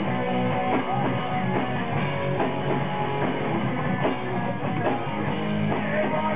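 Live punk rock band playing: electric guitars and a steady, driving drum beat, heard through the camera's microphone in the crowd.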